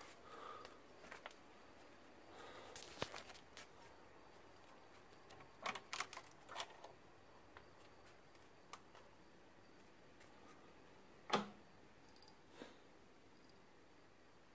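Near silence in a quiet room, broken by scattered soft rustles and short clicks as a person moves carefully while holding a phone. The loudest is a single sharp click about 11 seconds in.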